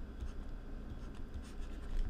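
Faint scratching of a stylus writing short strokes on a pen tablet, over a low steady hum.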